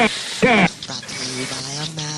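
A brief vocal sound that slides down in pitch, then a steady held note.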